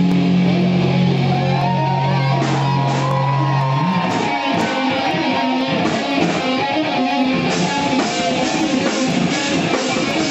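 Death metal band playing live, loud: the distorted electric guitars hold one low chord for about four seconds, then break into busier, choppier riffing.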